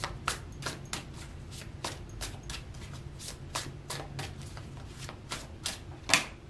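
A deck of tarot cards being shuffled by hand: the cards slap and click together in a quick, slightly uneven run of about three strokes a second.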